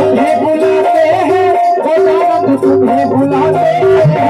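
Live band music: an electronic keyboard playing a melody in held notes over dholak and tabla hand drums, the drums dropping out briefly midway.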